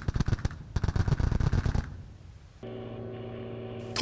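Towed twin-barrel anti-aircraft guns firing in a rapid, continuous stream of shots that fades out about two seconds in. A steady low hum follows near the end.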